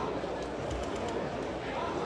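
Faint, indistinct background voices over steady outdoor ambient noise.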